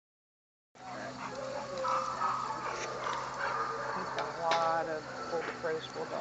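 A dog making several short high-pitched cries, the clearest about two seconds in and again around four and a half seconds in, with people's voices low underneath.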